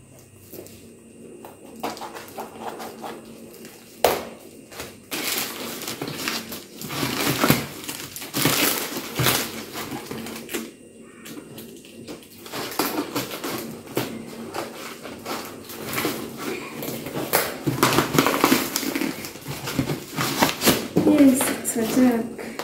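Scissors snipping through a plastic courier mailer and the packing tape on a cardboard box, with irregular crinkling of plastic and rustling of cardboard as the package is opened. There is a sharp click about four seconds in.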